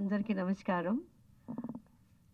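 Speech through a microphone for about a second, then a short pause and a brief low vocal sound near the end.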